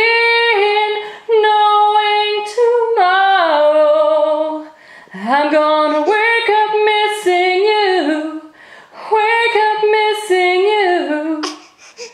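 A woman singing a slow ballad unaccompanied, in long held phrases with short breaks for breath, the last phrase ending near the end.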